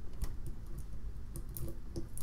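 A few irregular light clicks and scrapes of a thin metal lock rake working inside the keyway of a Brinks padlock clamped in a small vise, an attempt to bypass the locking mechanism without picking the pins.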